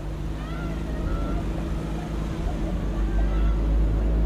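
A motor engine running with a steady low rumble and hum, growing slightly louder toward the end, with faint distant voices behind it.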